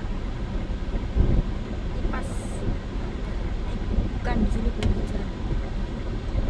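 Low, steady traffic rumble heard from inside a car stopped at a red light, as a large bus drives past close by. A brief high hiss comes about two seconds in.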